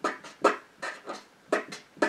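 Felt-tip marker writing on paper in short scratchy strokes, about three a second.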